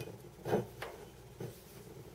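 Electrical cord of a light string being pushed through a rubber grommet in a glass wine bottle: a few faint, short taps and rubs, the loudest about half a second in.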